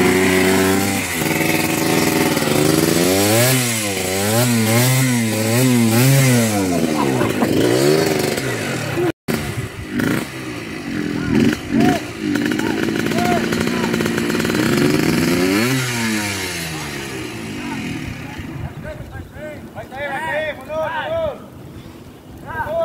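Trail dirt bike engine revving in quick repeated rises and falls as the bike struggles up a steep, loose dirt climb, its rear wheel spinning in the soil. The revving dies away near the end.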